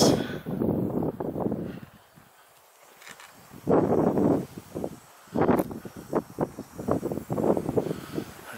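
Wind gusting over the camera microphone, coming and going in uneven surges. There is a lull of near quiet about two seconds in, then the gusts pick up again.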